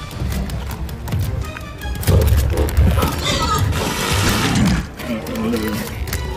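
Film soundtrack: tense score under a monster's loud shrieking roar, which rises about two seconds in, lasts about three seconds and drops off near the end.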